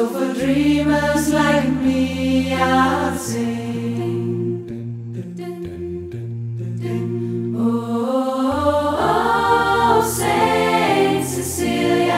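A cappella choir singing sustained chords in several parts over a low bass line, with no instruments. The sound swells twice, about a second in and again near the end.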